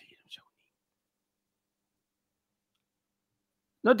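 Near silence for about three seconds between two bits of a man's speech: a word ends just after the start and another begins near the end.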